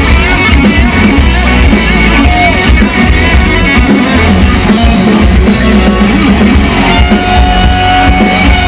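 Loud rock music: electric guitars, bass guitar and a drum kit playing together.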